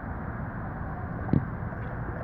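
Steady low outdoor background noise, a rumble like distant traffic, with one short click a little over a second in.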